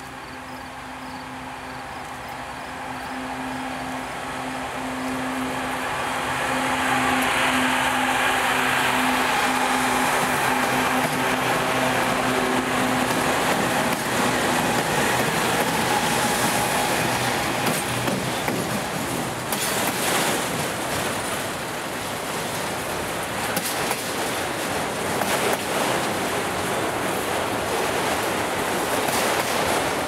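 Norfolk Southern diesel freight locomotives, an ES44AC leading a C40-9W, approach and pass. Their steady engine drone grows louder over the first several seconds and fades by about the middle. After that come the rolling rumble and wheel clatter of autorack cars going by.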